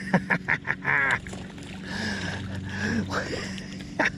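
A small hooked fish splashing at the surface as it is reeled to the bank, with a few sharp clicks in the first second and a short voiced sound about a second in.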